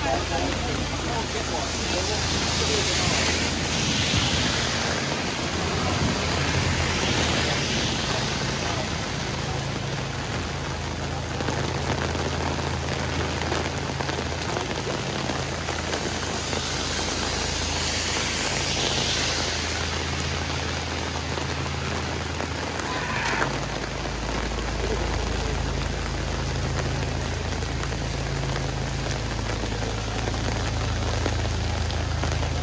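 Heavy rain pouring onto a city street and pavement, a steady loud hiss, with traffic swishing past on the wet road over a low engine hum that deepens a little after two thirds of the way through.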